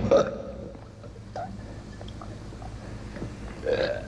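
A man belching: one short belch at the start and another near the end, with faint small clicks and knocks between.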